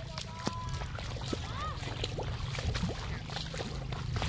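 Faint distant voices calling across a drained fish pond, with small splashes from feet wading through shallow water and mud, over a steady low rumble.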